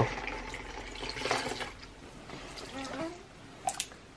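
A child sipping a drink through a straw, with soft liquid slurping and faint murmured voices. A couple of short clicks come near the end.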